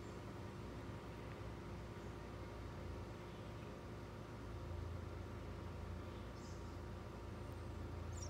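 Quiet room tone: a low steady hum under a faint even hiss, a little louder in the second half, with no distinct events.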